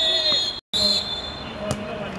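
A football referee's whistle blowing one steady high note, broken by an edit cut just after half a second in and running on briefly after it, with players' voices calling; near the end, a single sharp thud of a football being kicked.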